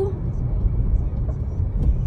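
Car in motion heard from inside the cabin: a steady low rumble of road and engine noise.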